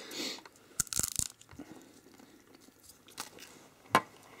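A bite taken from a crisp wafer bar: a few sharp crunches in the first second and a half, then quieter chewing.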